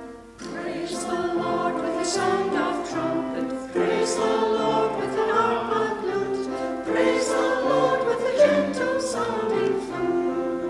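A small church choir singing together with keyboard accompaniment, the voices coming in about half a second in.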